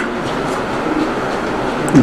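Steady room noise, an even hiss and rumble with no distinct event, heard in a pause between spoken sentences.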